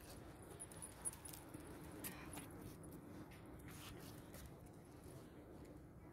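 Faint metallic clinks and ticks from a dog's leash clip and harness fittings as the dog moves on the leash, over a quiet low hum of outdoor ambience.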